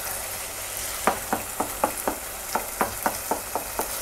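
Potato halwa sizzling as it fries in desi ghee and sugar syrup in a pan. A wooden spoon stirs and scrapes against the pan in quick strokes, about four a second, starting about a second in.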